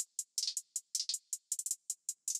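A programmed trap hi-hat pattern playing on its own in FL Studio, with a little reverb. It is a run of short, crisp ticks, about six a second, broken by quick rolls, with no kick, 808 or melody under it.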